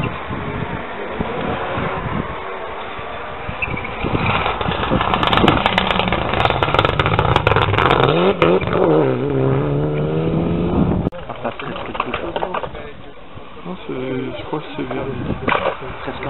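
Rally car passing at speed on a loose gravel stage, its engine revving with the pitch climbing and dropping through gear changes, with sharp crackles along the way; the sound cuts off abruptly about eleven seconds in. Spectators' voices are heard before and after.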